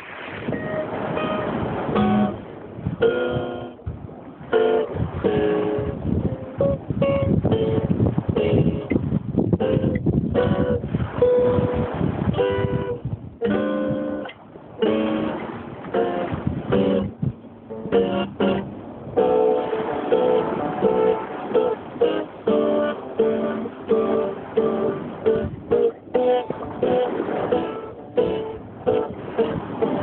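Small steel-string acoustic guitar played by hand: picked single notes and short strummed chords, with brief pauses between phrases.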